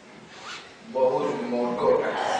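A man's speaking voice, picked up close by a clip-on microphone, resuming after a short pause; a brief breathy sound comes about half a second in, just before he speaks again.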